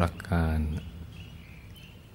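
A man speaking Thai slowly, a short word at the start, then a pause with only faint background noise.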